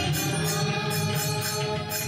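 Devotional chanting over a steady low drone, with a light metallic jingle struck in an even rhythm about three to four times a second.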